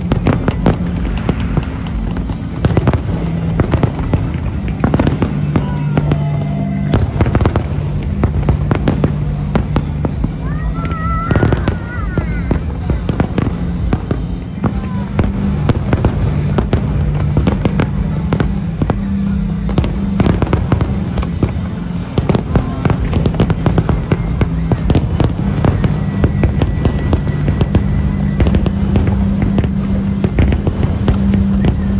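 Aerial fireworks display: a continuous, irregular run of bangs and crackles from shells bursting, over a steady low hum.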